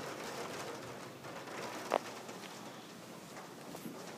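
A bird calling faintly over quiet room noise, with one short click about two seconds in.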